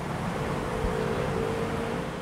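Steady outdoor background noise, an even hiss, with a faint steady hum that starts shortly after the beginning.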